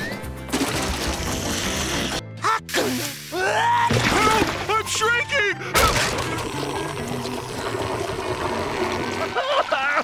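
Cartoon soundtrack: background music with a high, wordless cartoon voice in the middle and water sloshing and pouring in a bucket. The sound cuts off abruptly about two seconds in and shifts again around six seconds.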